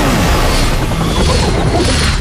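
Helicopter crash sound effect: a loud, continuous crashing din with repeated falling tones.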